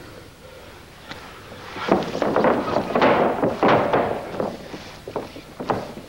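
Thuds and scuffling of bodies on a wrestling-ring canvas as two fighters grapple and scramble. The sound is loudest and busiest for a couple of seconds in the middle, with scattered knocks around it.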